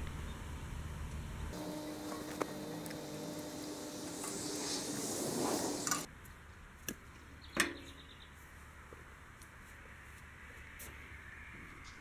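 Faint handling noises of hands working on a garden tractor's speed-control linkage rod, unhooking it and screwing it out to lengthen it. Two sharp clicks stand out in the second half.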